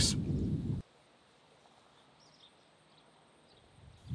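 A low rumble of background noise that cuts off suddenly under a second in, leaving near silence with a few faint high chirps.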